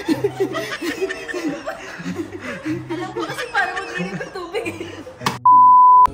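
People snickering and chuckling. About five seconds in, a loud, steady, single-pitched bleep replaces all other sound for about half a second, like a censor bleep edited over a word.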